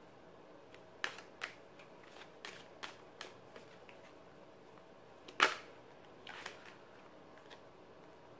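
Tarot cards being shuffled and handled: a scatter of light clicks and taps, with one sharper snap about five and a half seconds in.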